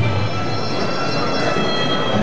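Thai sarama music for the Muay Thai Wai Khru: the shrill, reedy pi java oboe holding long notes, with the drums briefly dropping out.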